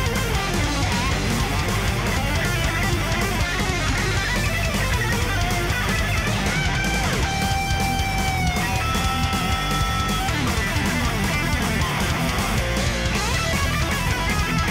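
Thrash metal song played by a full band, led by a distorted electric guitar solo, with a couple of long held lead notes in the middle.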